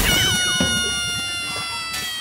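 An inserted comedy sound effect: one long, high-pitched wail that drops quickly at the start, then sinks slowly and fades.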